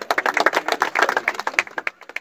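A small group clapping by hand: quick, uneven claps that thin out near the end as the felicitation garland is put on.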